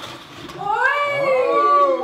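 A brief rustle as cardboard box lids are lifted, then a long, high, drawn-out vocal cry that rises and then falls in pitch.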